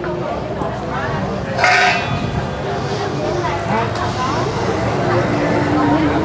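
Background voices and crowd chatter, with one short, loud vocal sound about two seconds in.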